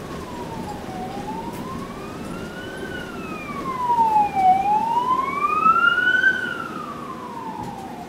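An emergency vehicle's siren wailing, rising and falling slowly about every three and a half seconds and loudest in the middle, heard from inside a moving bus over its low running rumble.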